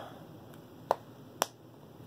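Two sharp clicks about half a second apart from a can of dip snuff being handled, the lid being worked in the fingers.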